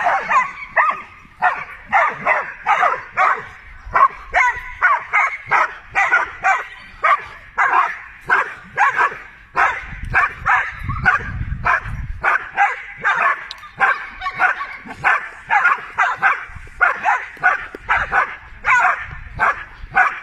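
Two working dogs barking rapidly and without pause, about two to three barks a second, at a helper holding a bite sleeve. This is a bark-and-hold (revier) exercise, in which the dogs hold the helper in place by barking.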